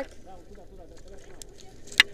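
Faint, distant voices, with one short sharp click near the end.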